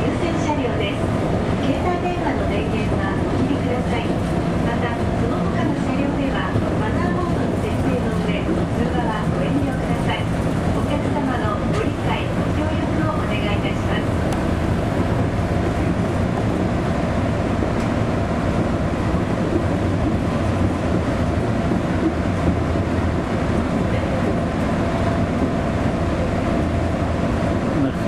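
Steady running rumble inside a moving elevated train carriage, with faint voices in the background.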